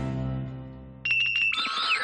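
A short musical transition sting. A low note starts suddenly and fades away, then about a second in a quick run of bright, bell-like chiming tones gives way to a glittering sweep.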